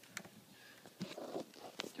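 Faint clicks and rustling of a power cord being wiggled at its plug, a handful of separate clicks. Wiggling the cord cuts the unit's power, the sign of a loose or faulty connection in the cord.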